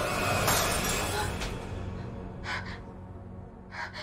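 Glass shattering about half a second in, as a mirror is struck, over a low, dark music score. A few short, sharp breaths follow later.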